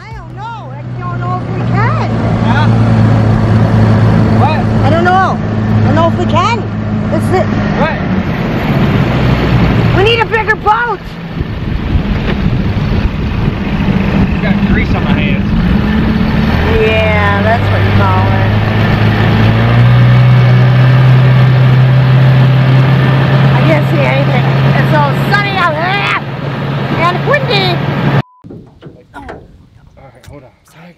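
Boat's outboard motor running under way with a steady low drone. Its pitch shifts around ten seconds in and steps up again around twenty seconds. The sound cuts off abruptly shortly before the end.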